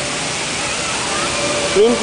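Steady rush of fountain water jets spraying and splashing down into the pool around the Unisphere. A man's voice begins a word near the end.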